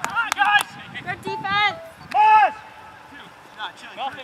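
Men shouting during an ultimate frisbee point: several short calls, one wavering, with the loudest shout about two seconds in. A few sharp clicks come right at the start.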